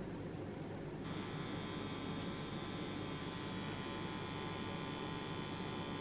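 Permanent make-up pen machine running with a steady high-pitched buzz, switching on about a second in as it needles pigment into the lash line for an eyeliner.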